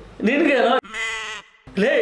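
A short spoken word, then a wavering, bleating voice lasting about half a second that cuts off abruptly.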